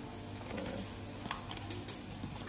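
A few light clicks and crinkles as a paper spice packet is handled, over a low steady hum.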